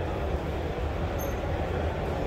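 Steady ambience of a busy indoor hall: a continuous low rumble under an even murmur of crowd chatter, with no single sound standing out.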